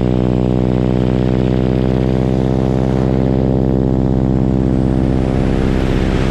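Boeing Stearman biplane's radial engine running steadily at constant power in flight, heard close up from the wing with the rush of the slipstream over it.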